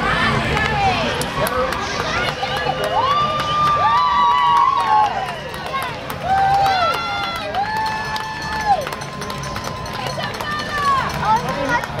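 Crowd of spectators cheering and shouting encouragement to young runners, with several long drawn-out shouts in the middle, over steady crowd chatter.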